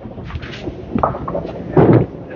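Candlepin bowling alley din: a steady rumble of balls rolling on the lanes, with scattered knocks and clatter of balls and pins and a louder thud near the end.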